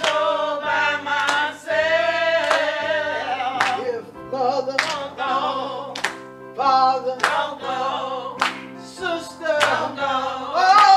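A small group of women singing a slow gospel song into microphones, over a steady instrumental accompaniment, with a sharp beat about every second and a quarter.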